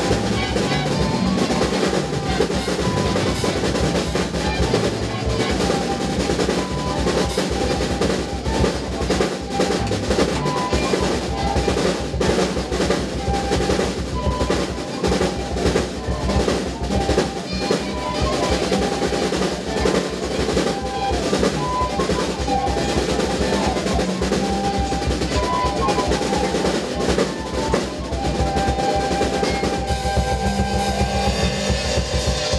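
Live drum kit playing busily through an instrumental passage of a rock song, with snare rolls and rimshots over the bass drum. Other band instruments hold notes underneath.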